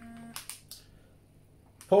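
A man's hesitant "um" trailing off, then a few faint clicks and quiet room tone in a small room. Speech starts again near the end.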